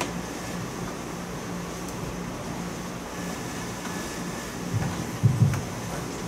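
Steady room noise: an even hiss with a low hum, and a few short low sounds about five seconds in.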